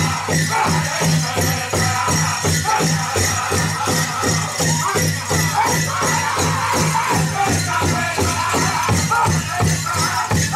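Powwow drum group striking a big drum in a fast, steady beat, about three strokes a second, while the singers sing over it. The jingling of the dancers' bells and cones runs through the beat.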